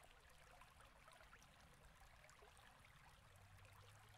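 Near silence: faint room tone with a light hiss, and a faint low hum coming in near the end.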